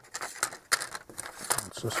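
Stiff paper sample cards rustling and clicking against each other and the bench as they are sorted by hand: a run of short, irregular taps and scrapes. A single spoken word comes near the end.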